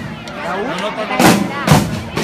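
A group of drums being beaten in a street drumming beat. There is a pause in the beat during the first second, with people's voices heard, and then two loud strokes about half a second apart in the second half.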